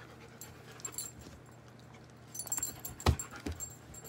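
A pet dog panting softly. A short run of clicks and knocks comes about two and a half seconds in, with one sharp knock just after three seconds, the loudest sound here.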